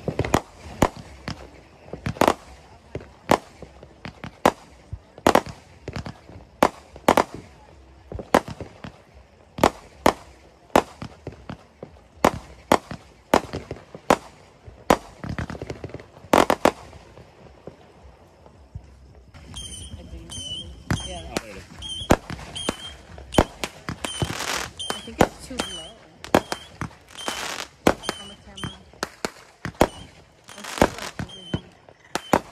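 Fireworks going off: a long string of sharp bangs and pops, irregular, about one or two a second, with crackle between them. About two-thirds of the way through, a short high chirp starts repeating about twice a second under the bangs.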